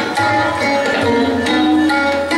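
Tabla playing: sharp struck strokes with deep, ringing bass-drum notes, over a sustained melodic accompaniment.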